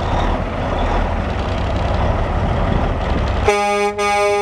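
Caterpillar 3406 inline-six diesel of a 1990 Peterbilt 378 semi running at idle with a low rumble. About three and a half seconds in, the truck's horn sounds a steady pitched blast that is still going at the end.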